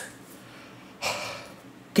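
A man's single short, audible breath about a second into a pause in his talk, over low room tone.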